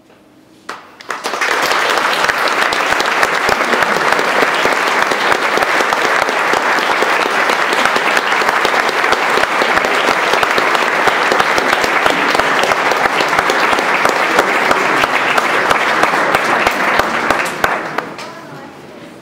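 Audience applauding, starting about a second in, holding steady, and dying away near the end.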